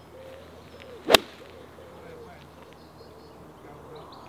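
A golf wedge striking the ball on a full approach shot: one sharp, crisp click about a second in.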